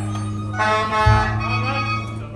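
Live ensemble music: long held low bass notes, a new one entering about a second in, under a higher wavering melodic line.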